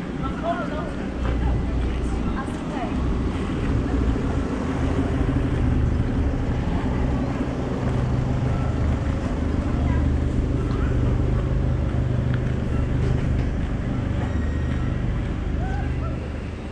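A steady low rumble that swells and eases, with faint children's voices near the start and near the end.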